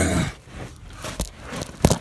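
Scraping and rustling of a person crawling through a narrow cave hole, the handheld phone rubbing against dirt and rock, with a couple of sharp knocks near the end that are the loudest sounds.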